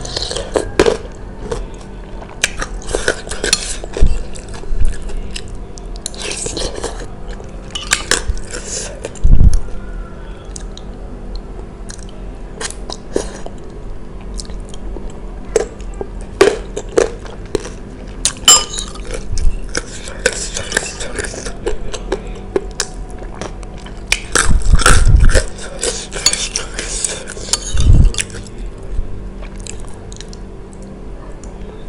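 Close-miked eating sounds: chewing and slurping spicy noodles, broth and chewy tapioca balls (bakso aci), with a metal spoon clicking against a ceramic bowl. A few heavy low thumps come about nine seconds in and twice near the end.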